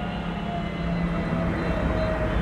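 A steady low hum over a bed of background noise, with a faint, thin higher tone joining about halfway through.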